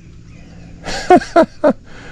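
A man laughing in three short, loud bursts about a second in.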